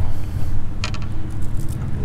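Wind buffeting the microphone on an open boat, a steady low rumble, with a faint steady hum underneath and a short brushing noise just under a second in.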